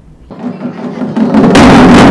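Taiko drums played by a children's ensemble, coming in faintly and turning loud about a second and a half in, with repeated drum strikes.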